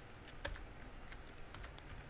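Computer keyboard typing: a run of irregular keystroke clicks, one a little louder about half a second in.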